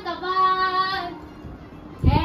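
A high-pitched voice calling out in a drawn-out sing-song, holding one long note for about a second before fading away.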